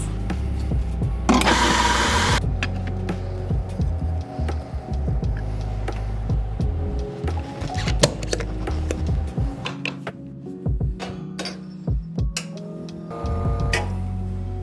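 Background music over the scattered clicks and knocks of espresso-making tools, with a short burst of hiss about a second and a half in.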